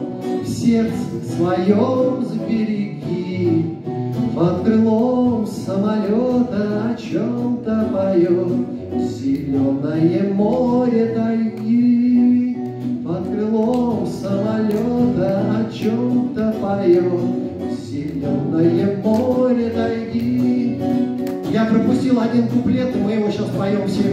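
A man sings to his own acoustic guitar, amplified through stage speakers.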